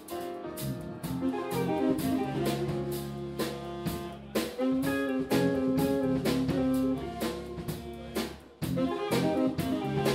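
Live jazz band playing: saxophone leading over electric guitar, electric bass and drum kit, with steady cymbal strokes. The saxophone holds a long note about halfway through.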